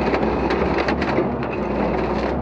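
Naarva EF28 energy-wood felling head feeding and delimbing a bundle of thin hardwood stems, with a dense crackling and snapping of wood and bark. Under it runs the steady hum of the Valmet 911.1 base machine's diesel engine.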